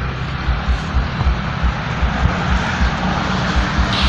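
Steady rumbling background noise with a faint low hum and irregular low thumps, engine-like in character.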